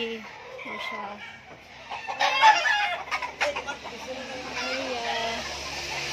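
Gamecock roosters clucking and crowing, with the loudest call between about two and three seconds in.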